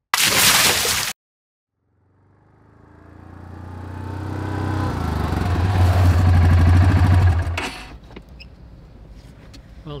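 A short burst of noise, then a quad bike's engine growing steadily louder as it approaches and runs close by with a rapid low throb, cutting off suddenly about seven and a half seconds in.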